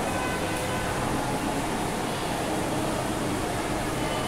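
Steady hissing background noise, even throughout, with a few faint brief tones near the start.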